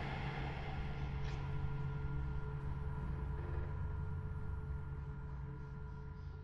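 A low, steady drone with a few held higher tones above it, beginning to fade out near the end.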